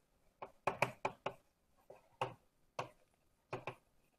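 Writing on a lecture board: a run of short, sharp, irregular taps, about ten in four seconds, some coming in quick pairs or threes.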